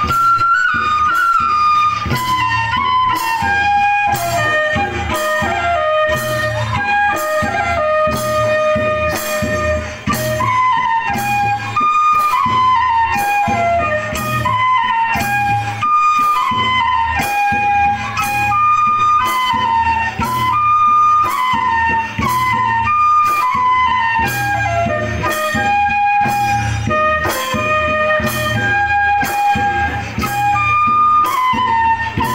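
Bodo folk dance music: a flute playing a stepping, repeating melody over a steady drum beat.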